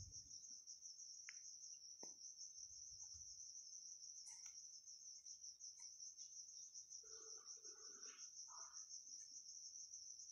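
Near silence with a faint, steady high-pitched insect trill running throughout, and a few soft scattered clicks.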